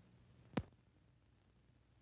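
A single short, sharp thump about half a second in. It sits over the faint low hum and hiss of an old film soundtrack.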